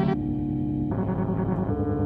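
Electronic music from a modular synthesizer: a sustained chord of held tones rich in overtones, shifting pitch shortly after the start and again about halfway through.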